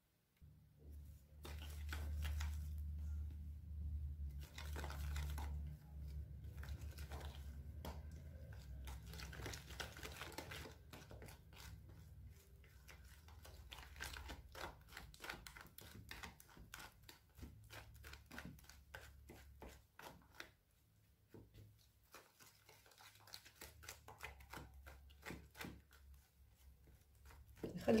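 A plastic spatula stirring and scraping in a stainless steel mixing bowl, working water into yeast in a well of flour. The scrapes and taps are quiet and irregular, with a low rumble during the first few seconds.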